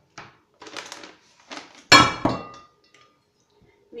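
Paper rustling and handling noises, then about two seconds in a loud clank with a short metallic ring, as a tin can is set down hard on the table.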